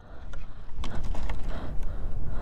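Irregular crunches and clicks of crusted, icy snow and of a crashed plastic RC truck being grabbed by a gloved hand, over a low rumble on the body-worn microphone.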